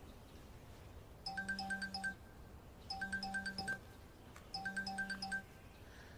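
Mobile phone ringtone ringing three times, each ring a quick run of electronic beeps about a second long over a low buzz, with short gaps between the rings.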